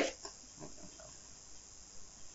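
A man's speaking voice trails off just after the start, then a quiet pause in the talk with faint steady recording hiss and a few faint soft sounds.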